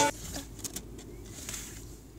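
Music from a phone speaker cuts off at the start, leaving a low steady background rumble with a few faint clicks.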